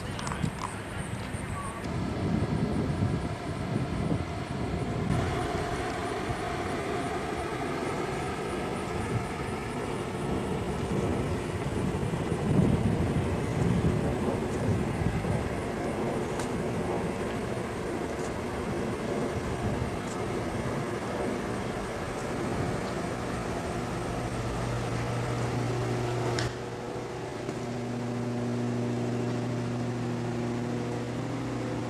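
Continuous low outdoor rumble of background noise, with a steady low hum coming in about three-quarters of the way through.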